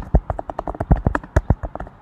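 Typing on a computer keyboard: a quick, uneven run of about a dozen key clicks as a terminal command is entered.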